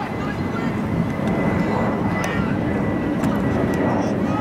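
Outdoor ambience at a soccer pitch: a steady rumble of background noise with faint, distant shouting from players and a few light knocks.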